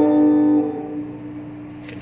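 Guitar chord ringing out after a strum, its notes fading away over about a second and a half.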